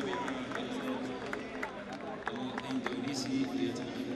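Stadium ambience of many indistinct voices talking at once, with a few short sharp clicks scattered through it.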